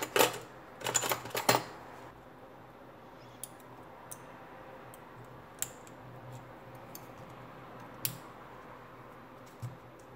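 Small plastic clicks and taps as a tablet's mainboard is handled and pressed into its plastic frame: a cluster of handling noises in the first second and a half, then a few isolated sharp clicks over a faint low hum.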